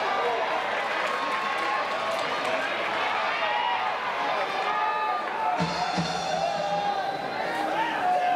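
Ballpark crowd sound from the stands: many voices and music from a cheering section, with mixed chanting and talk throughout. Past the middle, a low held note starts sharply and lasts over a second.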